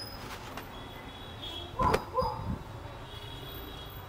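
A dog barking twice in quick succession, about two seconds in.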